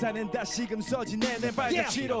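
A male voice rapping in quick, rhythmic phrases over a hip hop backing track, part of a live K-pop vocal performance played back in the reaction.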